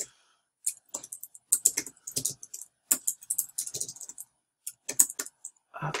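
Typing on a computer keyboard: a fast, irregular run of key clicks as a short line of text is typed, with a brief pause about four seconds in before a last few keystrokes.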